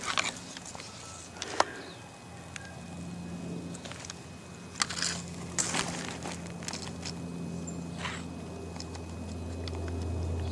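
Handheld camera being moved about and set down in forest undergrowth: scattered snaps and crackles of twigs and leaf litter and knocks of handling against the microphone, over a faint steady low hum.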